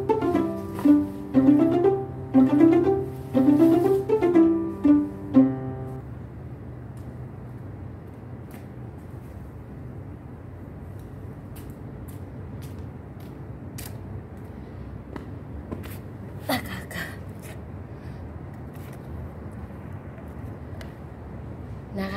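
Background music of plucked strings in quick rising runs, which cuts off about six seconds in. After that only a low, steady hiss of ambience remains, with scattered faint clicks and one brief louder sound about sixteen seconds in.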